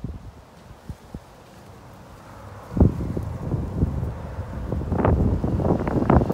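Wind buffeting the microphone: a few soft knocks in the first seconds, then an uneven low rumble that sets in about three seconds in and grows louder in gusts.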